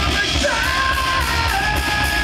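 Blackened thrash metal band playing live: distorted electric guitar and bass over steady drumming, with a harsh shouted vocal holding long notes.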